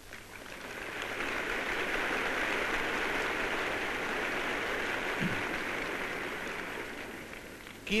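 Audience applauding, swelling up over the first second, holding steady, then dying away near the end.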